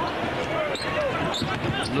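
Basketball game sound on a TV broadcast: a ball dribbled on the hardwood court over arena crowd noise, with a commentator's voice.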